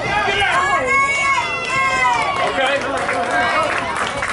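Several voices shouting drawn-out calls of encouragement, like players' chatter during a baseball game; the words are unclear.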